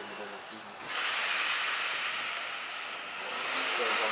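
Electric motor and propeller of an indoor F3P aerobatic model airplane throttling up suddenly about a second in to a steady, hiss-like whirr. It eases slightly, then rises again near the end.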